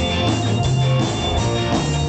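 A live band playing rock music: electric guitar over a drum kit, loud and continuous.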